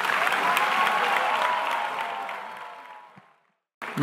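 Large audience applauding in a big hall, fading out and cut off abruptly about three and a half seconds in.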